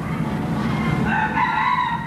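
A rooster crowing: one long call that begins about a second in and is still going at the end.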